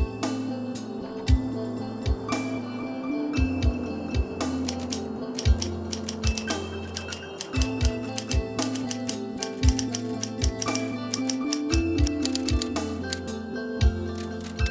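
Typewriter keys being struck in quick, irregular runs of sharp clacks, over background music.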